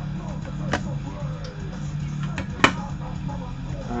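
Plastic cassette case being handled and opened: a few light clicks, then one sharp click a little over halfway through, over a steady low hum.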